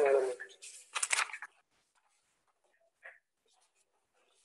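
A voice says "so", a brief noisy sound follows about a second in, then near silence with one faint tick.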